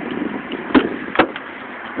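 Front door of a 2015 GMC Yukon XL opened by its handle under keyless entry, with the key in a pocket: two sharp clicks, about three-quarters of a second and a second and a quarter in, as the lock and latch release.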